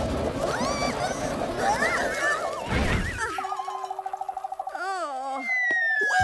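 Cartoon sound effects: a run of whistling pitch glides, then a steady wavering tone with a wobbling sweep and a falling whistle near the end.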